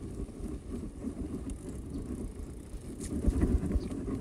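Mountain bike rolling over a bumpy dirt trail: low rumble from the tyres and irregular knocks and rattles as the bike jolts, with a few harder jolts near the end.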